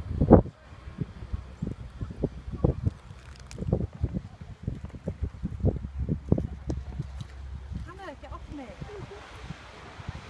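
Irregular low thumps and rumbling of wind and handling noise on a phone microphone outdoors, the loudest thump just after the start. Faint voices come through near the end.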